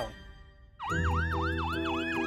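Fire engine siren in a fast yelp, about four sweeps a second. It starts suddenly about a second in, over a low steady rumble.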